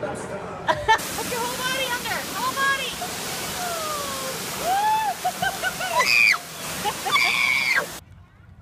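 Waterfall rushing into a rocky swimming pool, setting in about a second in, with water sloshing around a child. High voices call and shout over the rush, loudest near the end.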